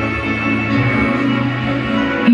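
Instrumental backing track of a slow ballad playing on its own, sustained held chords with no voice, in a pause between the sung lines.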